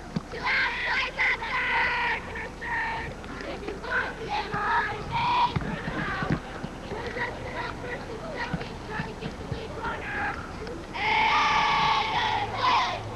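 High-pitched voices shouting and cheering in short calls, with a longer, louder shout about eleven seconds in.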